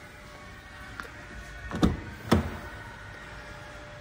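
The Ford Kuga's front door being opened: a light click from the handle, then two solid clunks about half a second apart as the latch releases and the door swings open, over faint background music.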